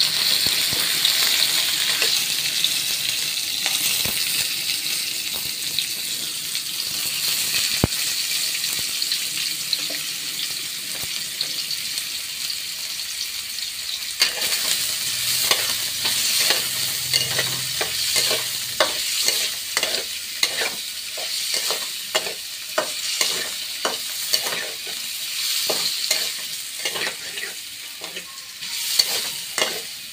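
Food deep-frying in a wok of hot oil, sizzling steadily as it is stirred, with many short pops and clicks from about halfway through.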